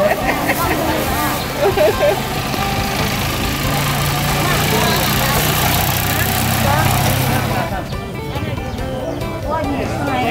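People's voices and music together, over a steady rushing noise with a low hum that drops away about eight seconds in.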